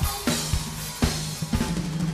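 Live funk band groove with the drum kit to the fore: kick drum and snare hits about twice a second, with cymbal crashes at the start and about a second in, over a steady bass line.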